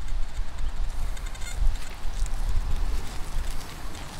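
Outdoor wind rumbling on the microphone, with faint distant bird calls about a second in.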